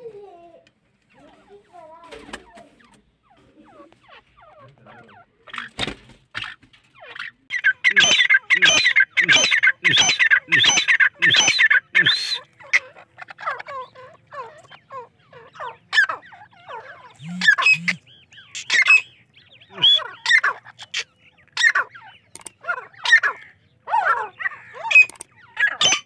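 White teetar (partridges) calling: harsh, repeated loud notes, a fast run of them from about eight to twelve seconds in, then scattered single calls. The first few seconds are much quieter.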